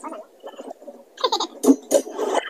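Wordless vocal noises from a man in a slapstick comedy clip, coming in short bursts that grow loudest near the end. The sound is thin, as if heard through a video chat, with no low end.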